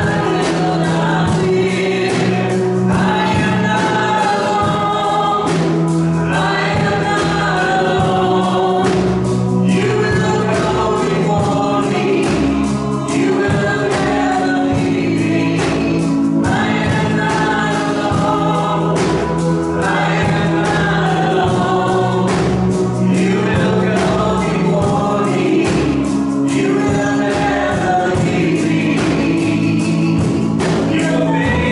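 Many voices singing a contemporary worship song together over instrumental backing, with sustained low notes and a steady beat. Partway through, the singing moves from a verse into the chorus.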